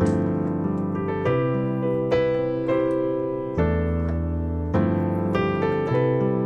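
Digital keyboard on a piano sound playing slow, sustained chords in G major, a new chord struck about once a second.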